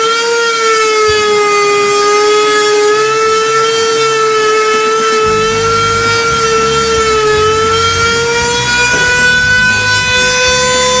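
Router spindle running loud at a high, steady whine as it engraves a symbol into a wooden dummy trunk, its pitch wavering slightly under the cut and rising a little near the end. A lower, uneven rumble from the cutting joins about halfway through.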